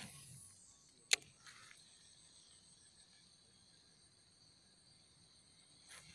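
Faint, steady chirring of insects, with a single sharp click about a second in.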